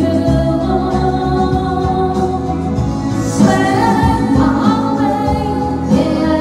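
A woman singing into a microphone over instrumental accompaniment, holding long notes.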